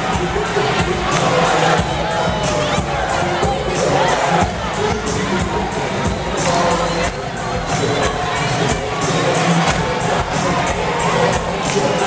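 A large crowd cheering and shouting loudly and continuously, with music and a steady beat underneath.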